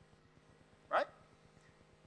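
A single brief vocal sound about a second in, rising quickly in pitch like a hiccup or squeak, against otherwise quiet room tone.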